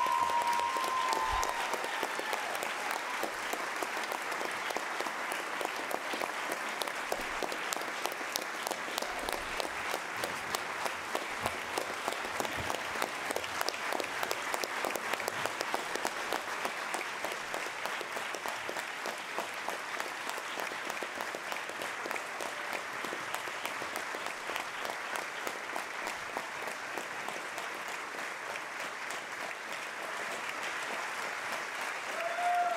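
Sustained applause from a large audience, a dense even clapping that eases off gradually.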